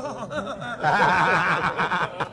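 A group of men laughing and chuckling, mixed with a man's voice; the laughter swells and gets louder about a second in.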